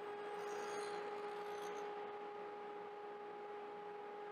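Table saw with a stacked dado set spinning, a steady hum with a higher tone above it, faint in the mix.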